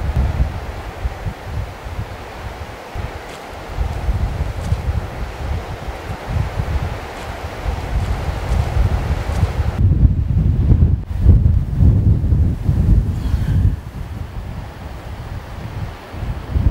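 Wind buffeting the microphone in gusts, a heavy uneven low rumble. For the first ten seconds a steady hiss sits over it, then it drops away abruptly and only the buffeting remains.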